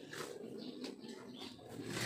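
Faint bird calls, with a few soft clicks.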